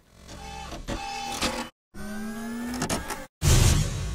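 Logo sound effect: two short bursts of machine-like whirring, the second rising in pitch, then a loud deep hit about three and a half seconds in that rings on.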